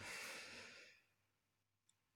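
A soft exhaled breath, fading out over about a second, then silence.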